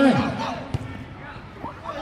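A football kicked once: a single sharp thud a little before the middle, the shot on goal, over faint outdoor pitch ambience.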